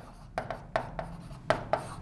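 Stylus writing on an interactive display's screen: a quick, uneven series of short taps and scratches, one per pen stroke.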